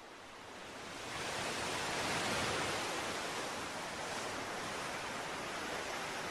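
Steady rushing noise of a water sound effect, fading in over the first second or two and then holding even.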